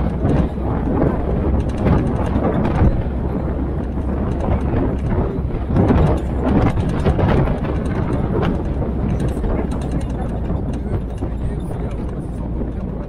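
Military jeep driving along a forest road: a steady low engine rumble with rough road and tyre noise over it.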